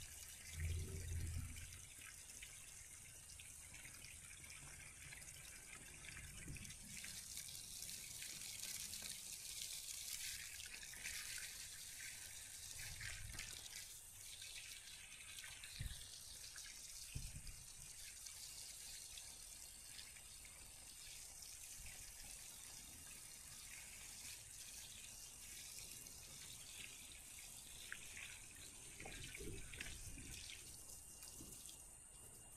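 Garden hose running, its water spraying onto grass and soil in a steady hiss.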